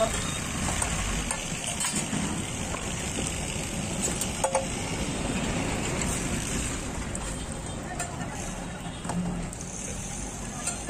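Beaten egg and oil sizzling on a large flat iron tawa while a steel ladle spreads the egg, with a few sharp clinks of the ladle on the metal.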